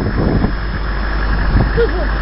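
Idling engine of a stopped military convoy truck, a steady low rumble, with faint voices over it.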